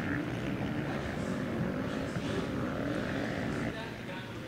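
Motocross bike engines revving up and down as riders race around a dirt track; the sound drops somewhat near the end.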